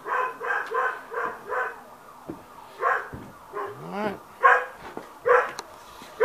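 A dog barking: a quick run of about five barks in the first two seconds, then single barks spaced about a second apart.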